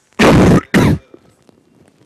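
A man coughing twice, loud and close to the microphone, the second cough shorter than the first.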